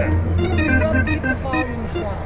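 Hammond Porta-B clone-wheel organ being played: a line of quickly changing notes over a steady low bass tone. The sound is short of treble, and the player says he wants more high end and isn't getting it.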